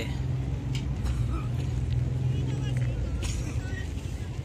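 Outdoor street ambience: a motor vehicle's engine runs with a low steady hum that drops away about three seconds in, with faint voices of passers-by.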